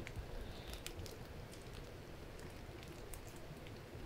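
Faint rain: scattered drops ticking over a low steady hiss.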